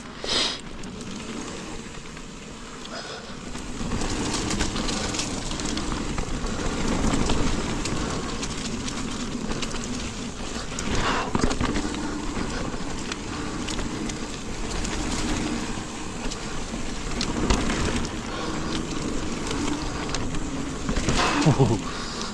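Mountain bike riding a dirt singletrack: steady tyre rumble on the damp trail with the chain and bike rattling, and occasional sharper knocks over bumps.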